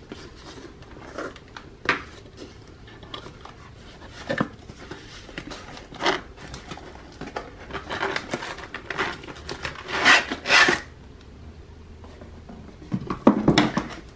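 Cardboard packaging handled by hand: box flaps pulled open and a packed inner box slid out, making irregular rubbing and scraping with a few sharper knocks. The loudest is a quick run of scrapes about ten seconds in.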